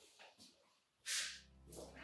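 A person getting up from a chair: a short swish of movement about halfway through, then a faint steady low hum.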